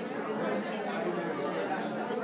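Indistinct chatter of many people talking at once, a steady murmur of overlapping voices with no single clear speaker.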